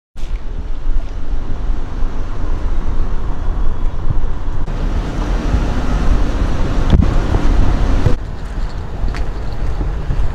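Loud, steady low rumble of wind buffeting the microphone, mixed with car road noise on a wet road. The sound changes abruptly about halfway and again near the end, where the footage cuts.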